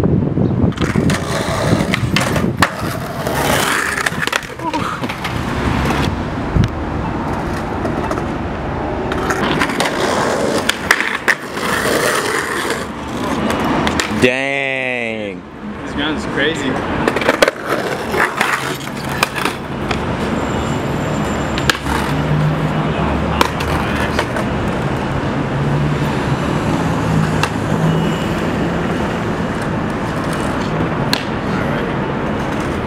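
Skateboard wheels rolling over stone tiles, with repeated sharp clacks and knocks of the deck and trucks hitting the ledge and ground. A brief sweeping whoosh comes about halfway through, then a steadier low hum.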